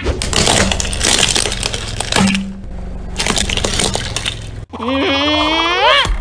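Plastic toy monster trucks cracking and breaking under a car tyre: a dense run of sharp cracks and snaps for about four and a half seconds. Near the end it changes suddenly to a short voice-like cry rising in pitch.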